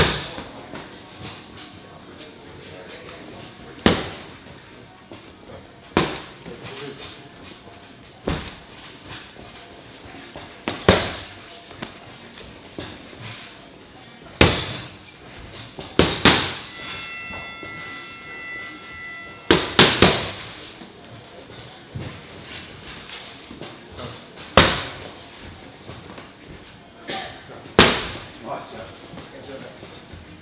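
Punches landing on boxing pads: about a dozen sharp smacks spread irregularly, a few in quick pairs, each with a short ring after it.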